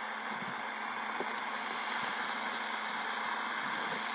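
CB radio receiver hiss between transmissions: steady static with the squelch open, a faint steady hum under it and a few light crackles.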